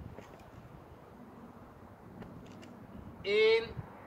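Faint outdoor background noise with a low rumble and a few light clicks, then near the end a man's voice loudly calls out the last number of a countdown.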